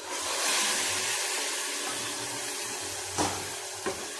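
Hot tempering oil poured from a small pan into a pot of liquid, sizzling and hissing; the hiss starts suddenly and slowly fades. Two short clicks near the end.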